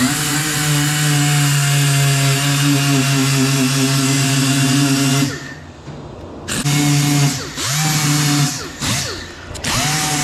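Right-angle die grinder with an abrasive disc grinding rust off a steel seat bracket, running at a steady high pitch. It cuts out about five seconds in and is then run again in shorter stretches with brief pauses, each start a quick rising whine as it spins up.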